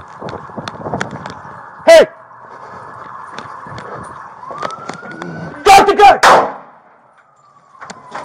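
Police siren wailing in the background, its pitch rising and then falling over the second half, under the clicks and clatter of an officer moving fast on foot. A loud shout cuts through about two seconds in, and a burst of loud shouts with sharp bangs comes around six seconds, followed by a short lull.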